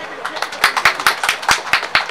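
Audience clapping: many quick, irregular hand claps in welcome.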